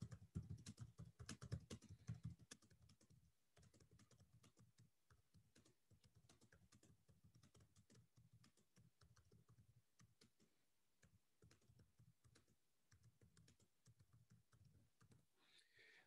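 Faint clicking of computer keyboard typing, a quick run of keystrokes in the first two and a half seconds, then only scattered faint ticks in near silence.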